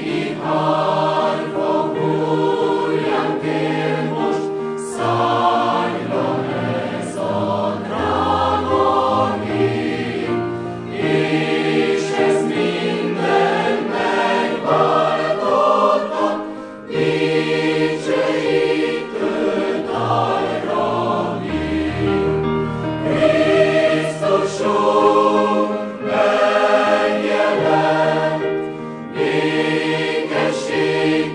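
Large mixed choir of women's and men's voices singing a sacred song in harmony, phrase by phrase, with short breaks between phrases about every six seconds.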